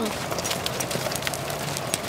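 Hoofbeats of several ridden horses on a sand arena, an irregular patter of soft strikes as horses pass close by.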